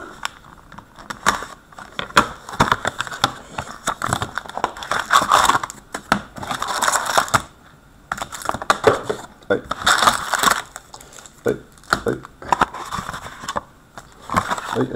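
Opening a cardboard Upper Deck hockey card box and handling its foil-wrapped packs: cardboard tearing and scraping, with the packs crinkling and clicking as they are pulled out in a row and stacked. The noises come in many short, sharp clicks and rustles.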